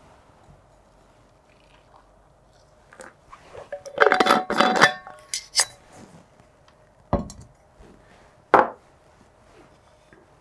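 Stainless steel thermos flask and metal tea strainer clinking against a glass beaker and each other, a dense cluster of clinks with a short metallic ring about four seconds in. A few sharp knocks follow later, two of them standing out.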